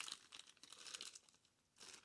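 Faint crinkling of a small plastic bag of seeds being handled, dying away to near silence about a second in.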